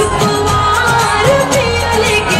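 A song playing loud: a voice singing a wavering melody over a steady drum beat.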